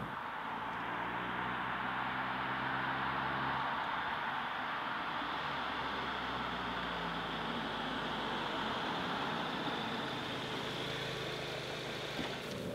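Volkswagen Golf GTI Clubsport's two-litre turbo four-cylinder running steadily at low revs as the car drives slowly up, with tyre noise on the road surface.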